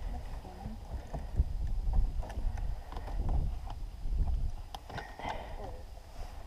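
Handling noise of RC battery leads being unplugged and multimeter probes clipped on: a few light clicks over an uneven low rumble.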